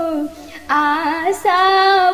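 A woman singing a traditional Bhojpuri Jitiya devotional song in long held notes, with a brief break for breath a little under half a second in.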